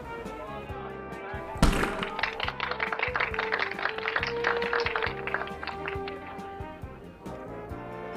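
Background music throughout. About one and a half seconds in there is a sharp thunk, then a metal cocktail shaker is shaken hard, rattling rapidly for about four seconds.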